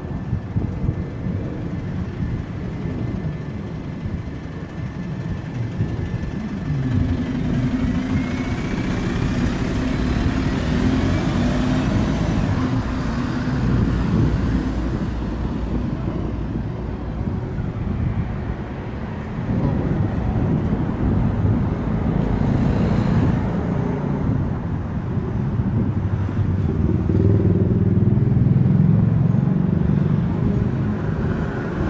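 City street traffic: cars and a bus running past close by, a continuous low engine and tyre rumble that swells several times as vehicles go by, with a faint rising whine about eight seconds in.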